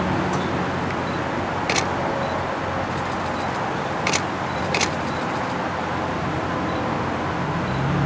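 Car engines idling with a steady low hum of traffic, broken by three sharp camera-shutter clicks about two, four and five seconds in.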